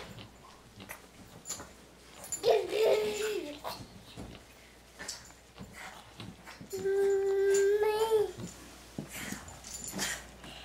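A toddler's vocalizing: a short wavering babbled sound about two and a half seconds in, then a long, steady, held 'aah' near the middle that bends up at its end.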